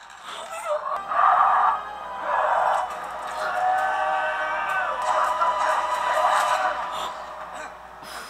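A man screaming in anguish, a few loud cries starting about a second in, over film score music.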